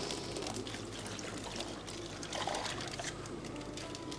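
Water steadily pouring and trickling out of a plastic fish bag into a plastic bucket of water.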